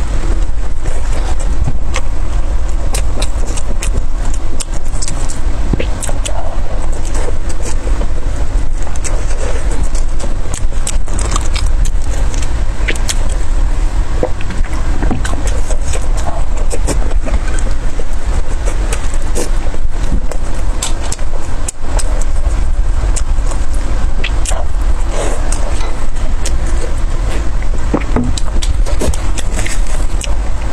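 Close-miked chewing of chili-oil-soaked steamed buns, with many short wet mouth clicks scattered through, over a steady loud low rumble.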